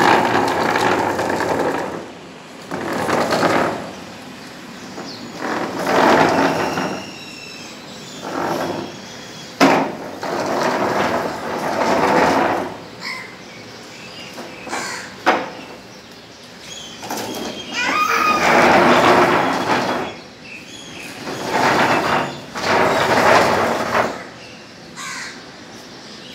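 Plastic chair legs scraping across a concrete floor as a baby walker pushes the chair along, with the walker's wheels rolling. The scraping comes in repeated rough bursts of one to three seconds, with short pauses between pushes.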